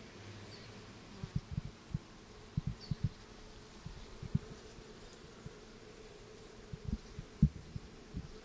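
Honeybees buzzing around a brood frame lifted out of the hive, a faint steady hum. Short low bumps come in clusters through it and are the loudest sounds.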